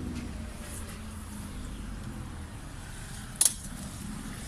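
Low, steady outdoor rumble with a single sharp click about three and a half seconds in.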